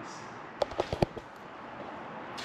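A few light clicks and knocks from a Ford F-450 pickup's door latch and handle being worked, bunched between about half a second and a second in.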